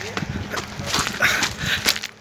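Footsteps crunching over loose river pebbles, with irregular clicks of stones knocking together underfoot.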